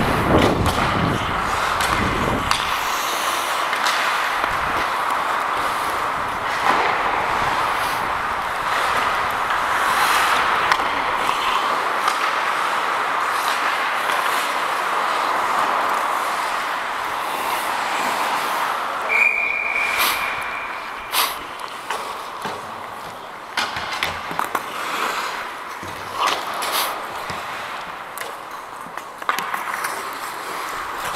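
Ice skates gliding and scraping on the rink's ice, with air rushing over the helmet-mounted microphone as the referee skates. About two-thirds of the way through, a referee's whistle is blown once: a single steady high tone lasting about a second. Sharp knocks of sticks and puck follow.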